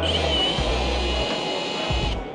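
Cordless drill running steadily with a high motor whine as it spins a socket to wind a trolley's screw leg, cutting off right at the end. Background music with a bass line plays underneath.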